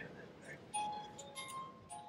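Paper-tape music box playing: the pins pluck its steel comb, giving a handful of separate ringing notes, one after another.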